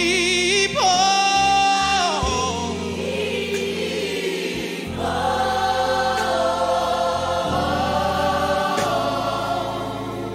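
Gospel mass choir singing with instrumental accompaniment. A male soloist's voice wavers with vibrato at the start and holds a high note that slides down. From about five seconds in the full choir sustains a chord.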